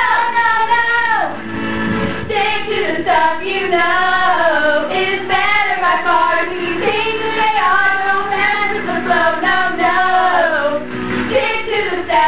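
Two teenage girls singing a pop show tune together into handheld microphones, loud and continuous, along with music.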